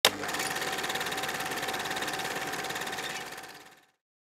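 A rapid mechanical buzz or rattle, about a dozen even pulses a second, with a steady tone running through it. It starts abruptly and fades out over the last second.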